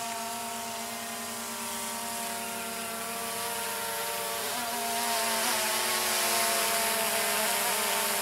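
DJI Phantom 2 quadcopter's four electric motors and propellers whining steadily in flight, with brief wobbles in pitch in the middle and growing a little louder after about five seconds.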